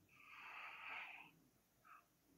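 A person's faint breath close to the microphone, lasting about a second, in otherwise near silence.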